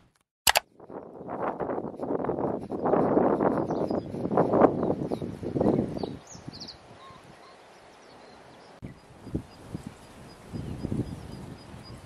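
Outdoor ambience in a grassy field. Loud rustling noise runs for the first half, then fades to faint bird chirps and a steady, high, regularly repeating ticking call, broken by a few short rustles.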